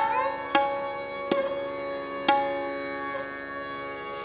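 Tabla struck sparsely, four single ringing strokes with the last the loudest, over the steady held notes of an accompanying melody on sarangi and harmonium.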